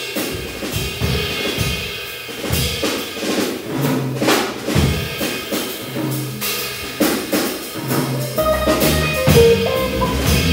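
Live jazz combo playing, with the drum kit to the fore: snare, bass drum and cymbals over a low bass line. More sustained pitched notes join in about eight and a half seconds in.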